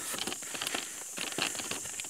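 A small cart drawn by two rams, rolling along a paved road: a light, irregular rattling and clicking, several knocks a second.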